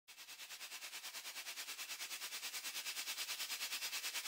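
A rapid, even pulsing hiss, about eight pulses a second, growing slowly louder.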